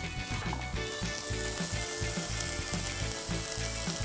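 Beef tenderloin searing in olive oil in a hot nonstick frying pan, sizzling steadily.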